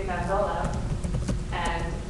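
A woman's voice talking in a room, over a steady low rumble, with a few light knocks about midway.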